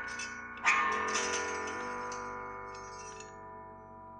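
Prepared electric guitar through effects pedals: a struck cluster of many overlapping tones rings out sharply about two-thirds of a second in and slowly fades.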